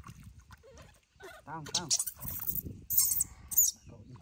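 Water splashing as hands scoop and pour it over a newborn baby monkey being bathed in a shallow pool. The baby gives a short, wavering cry about a second and a half in. Two sharp splashes near the end are the loudest sounds.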